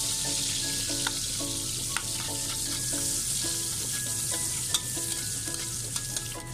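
Sliced onion sizzling in hot oil in a metal wok as it is stirred with a metal spoon, which clicks against the pan a few times.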